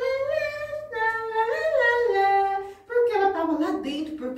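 A woman's voice singing a wordless tune in long, high held notes that step down in pitch, with a brief break about three seconds in. It is sung as the cicada's song in the story.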